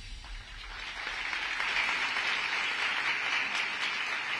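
Audience applause that swells during the first second as the music dies away, then continues steadily.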